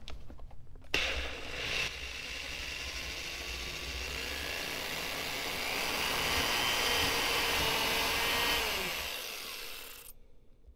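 DeWalt power drill boring a small pilot hole through a plywood former. The drill starts about a second in, its pitch rises partway through, and it winds down near the end.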